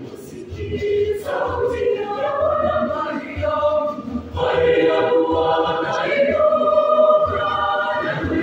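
Mixed youth choir of girls' and boys' voices singing in harmony, holding long chords; a louder phrase comes in about four and a half seconds in.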